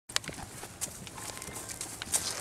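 A horse walking on grass turf, its hooves falling in soft, uneven steps, with a sharp click just after the start.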